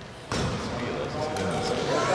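A basketball shot striking the hoop with a sudden knock about a third of a second in, followed by the ball bouncing on a hardwood court in a large gym.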